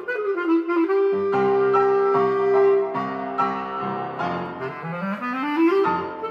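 Bass clarinet with piano accompaniment. The bass clarinet runs down into one long held note over repeated piano chords, then climbs in a rising run near the end.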